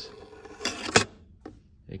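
Thin aluminium strip sliding off the end of a tilted magnet array: a brief scrape, then one sharp metallic clack about a second in as it lands, and a lighter tap half a second later.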